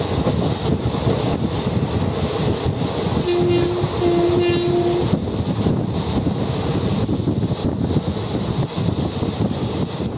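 A train running, with a continuous rumble heard from inside the moving carriage. About three seconds in, a horn sounds twice on one steady pitch, a short blast followed by a longer one.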